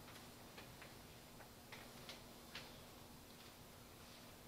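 Near silence with a low steady hum, broken by a few faint, irregular clicks and taps in the first half, the footsteps of a man walking across a carpeted chancel.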